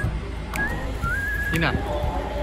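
A person whistling a few short notes, the last stepping up in pitch and held for about half a second, over the low murmur of a room.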